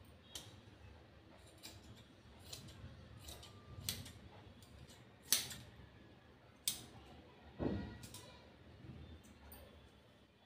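Scissors cutting cloth: a string of sharp snips and clacks about a second apart, the loudest a little past halfway, with soft rustling of fabric being handled between them.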